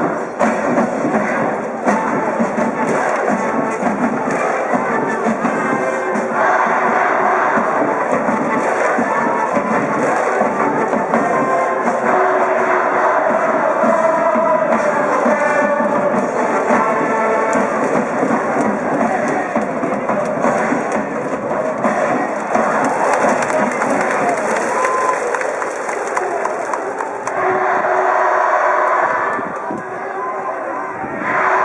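A high school brass band in the stands playing a baseball cheering song, with a drum beat and a crowd of students cheering along.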